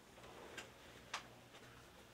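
Near silence: room tone with two faint, short ticks, about half a second in and just after a second in.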